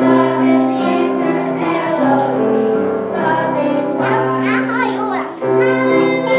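A youth group singing together over instrumental accompaniment of long held notes, with a brief dip in volume near the end.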